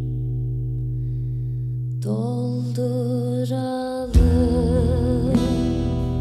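Live acoustic band music. Held low notes and chords come first, then a melody line with vibrato enters about two seconds in. About four seconds in, the full band comes in with a heavy low thump, along with acoustic guitar and upright double bass.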